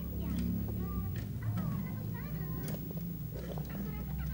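A small child's voice babbling in short rising and falling sounds, with a few light taps, over a steady low hum.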